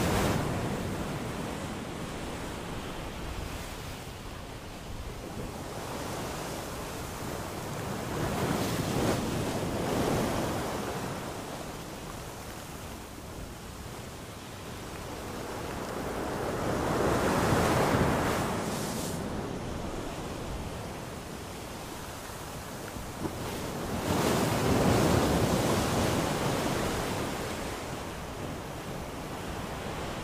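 Ocean surf breaking on a beach: a continuous wash of water that swells and fades in long surges every seven or eight seconds. The loudest surge comes a little past the middle, with another near the end.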